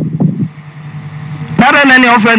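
A low rumbling hum with muffled sounds over it, then, about a second and a half in, a loud drawn-out voice.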